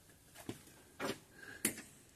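Three light clicks about half a second apart as the plastic cap of the brake master cylinder reservoir is taken off and a plastic brake fluid bottle is handled.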